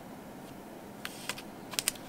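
A few light, sharp clicks and taps of fingers and fingernails on paper, about five in the second half, as a planner sticker is laid and pressed down onto the page.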